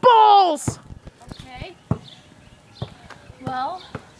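A loud yell that falls in pitch as a basketball is shot at the hoop, then the ball bouncing a few times on the concrete driveway. A brief voice sound comes again near the end.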